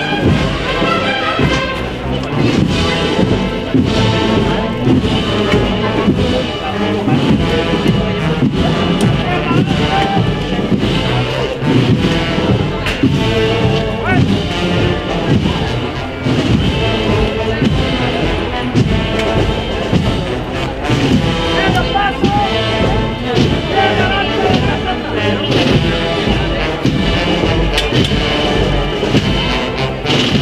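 Wind band of brass and woodwinds playing a processional march, with drum strokes keeping a steady beat.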